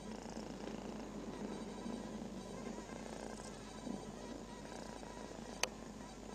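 A cat purring steadily and close by, with one brief sharp click near the end.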